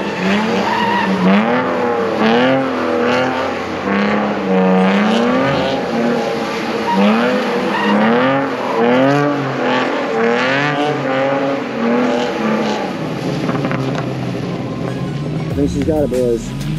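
BMW E46 M3's inline-six engine revving up and down over and over, rising and falling in pitch about once a second, as the car drifts in circles on a wet skid pad, with tyre noise under it.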